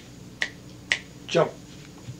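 Two sharp finger snaps about half a second apart, made by a man for emphasis, followed by his spoken word 'jump'.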